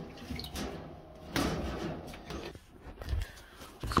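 Knocks, a scrape and a click from hands working the front-load washer's drain filter cap over a plastic catch pan.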